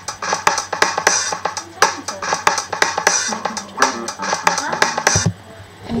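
GarageBand Apple Loops played back: a rock-blues drum loop with a steady beat, an electric bass loop joining about three seconds in. The playback stops abruptly a little after five seconds.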